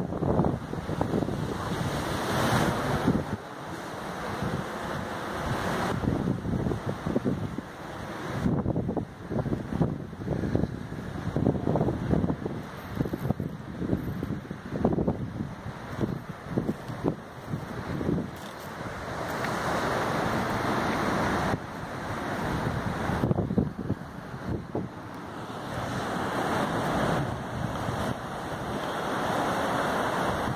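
Sea surf washing against rocks, with wind buffeting the phone's microphone; the noise swells and eases over a few seconds at a time.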